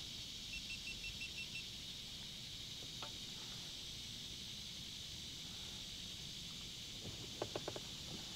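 Faint outdoor ambience at a pond: a steady high-pitched insect drone, with a short run of quick faint chirps about half a second in and a few soft ticks near the end.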